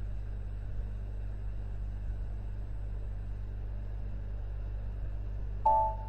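Steady low electrical hum and faint hiss of a desk microphone recording setup. Near the end a click is followed by a brief ringing tone that fades out.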